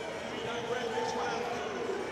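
Arena crowd noise during a robotics match: a steady murmur with faint distant voices.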